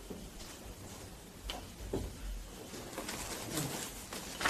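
Chalk writing on a blackboard: faint, scattered scratches and taps of the chalk as words are written.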